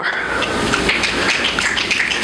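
Steady rustling noise of the audience and hall, as loud as the speaking voice around it, with a low rumble underneath and scattered small clicks.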